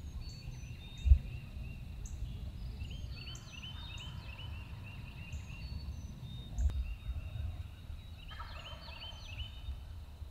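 Wild turkey gobbling, with the clearest gobble a little past eight seconds in, over steady chirping of songbirds. Low thumps about a second in and again near seven seconds, the first the loudest sound.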